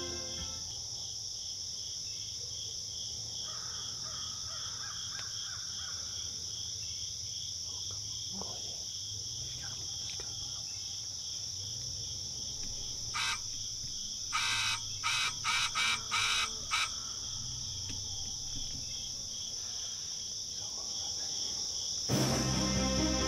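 A steady, high insect chorus with an even pulsing trill runs throughout. A bird caws about six times in quick succession between about 13 and 17 seconds in.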